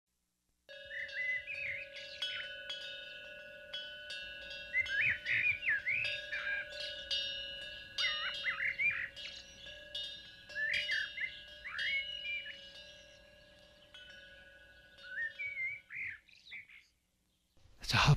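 Birds chirping in quick rising and falling calls over several steady held tones that ring underneath, with a few faint clicks. The tones stop about 16 seconds in, leaving a couple of last chirps.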